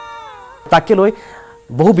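Speech: a voice saying a short phrase, pausing, then starting again near the end, over a faint steady tone from background music.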